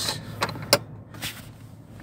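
A few light clicks and taps, the sharpest just under a second in, over a steady low hum.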